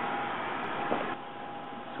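Steady whir of running desktop computers with a faint steady tone over it. About a second in it drops to a quieter, even room hiss.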